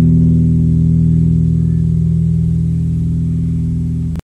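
Electric guitar (a Michael Kelly Patriot Vintage) holding its final chord through the amp, ringing on and slowly fading.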